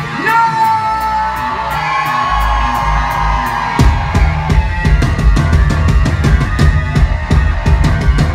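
Live pop-punk band: a vocal line held and bending in pitch over bass and guitar, then the drums and full band come crashing back in about four seconds in.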